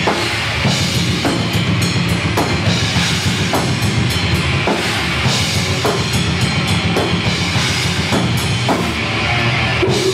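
A deathgrind band playing live: a drum kit with bass drum, distorted electric guitar and bass guitar, loud and steady.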